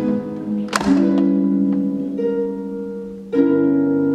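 Concert pedal harp playing: plucked chords whose notes ring on, with a loud, full chord struck just under a second in and another about three seconds in.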